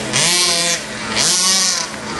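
Small two-stroke engines of 1/5-scale off-road RC cars revving, in two bursts about a second apart.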